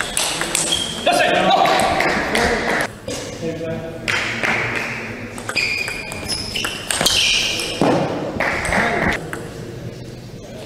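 Table tennis rally: the ball ticking back and forth between bats and table. Loud voices shout in between, about a second in and again around seven seconds.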